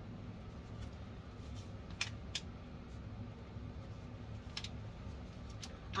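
A few faint clicks and rustles as a lettuce seedling plug is popped out of its tray, two of the clicks close together about two seconds in, over a steady low hum.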